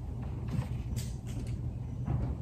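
Wooden pews creaking, with a few short clicks about a second in, as a kneeling worshipper shifts her weight, over a steady low hum.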